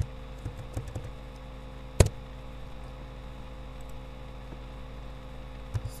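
Computer keyboard and mouse clicks over a steady electrical mains hum: a quick run of typing clicks in the first second, one sharp click about two seconds in, and a couple of faint clicks near the end.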